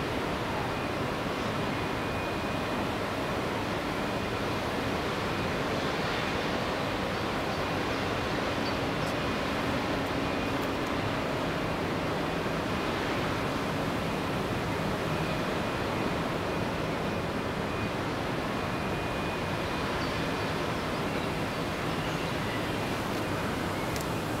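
Heavy industrial plant giving off a steady, even rushing noise, with a faint high whine and a low hum running through it.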